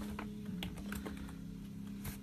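Computer keyboard keys being tapped, a handful of irregular clicks, over a steady low hum.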